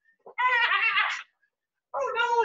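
A man's high-pitched, wavering falsetto cry of mock fright, an 'ahh' lasting just under a second, made while running in place.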